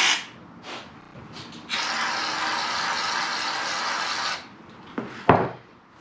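Aerosol can of foam shaving cream spraying onto a plate: a short hiss at the start, then a steady hiss lasting about two and a half seconds. A sharp knock near the end as the can is set down on the table.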